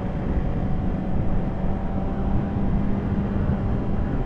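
Suzuki GSX-R600 sportbike's four-cylinder engine running at a steady cruising speed, one even drone, under heavy wind rush on the microphone.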